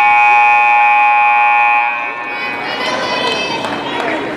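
Gym scoreboard horn sounding one steady, loud blast for about two seconds, then cutting off, with a short ring of echo in the hall.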